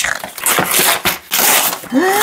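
Gift wrapping paper being torn and pulled off a box, in several rough rips about half a second apart.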